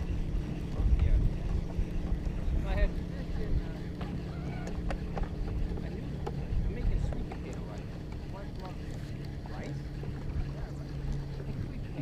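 Wind buffeting the microphone over open water from a small fishing boat, a low rumble with a faint steady hum underneath.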